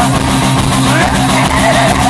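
Live rock band with a distorted electric guitar lead sliding up and down in pitch over a steady chord held by bass and rhythm guitar.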